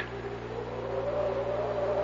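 A steady low hum under a faint held tone that rises slightly in pitch over about the first second, then holds.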